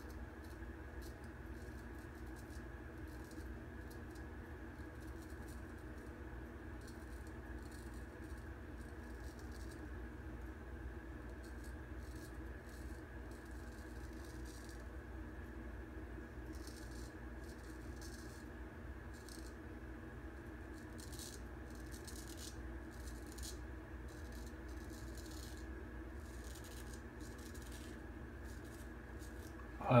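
Straight razor scraping through lathered whiskers around the mouth and chin: quiet, irregular crackling strokes over a steady low hum.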